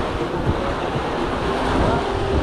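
Small waves washing onto a sandy beach, a steady rush with low wind rumble on the microphone.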